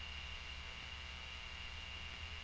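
Faint steady room tone of a talk recording: a low hum with light hiss and a thin, steady high tone.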